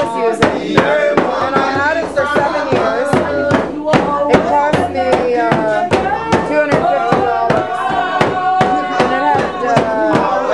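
Several voices singing together in a lively song, with a frame drum beaten with a stick in a steady beat of about two to three strokes a second.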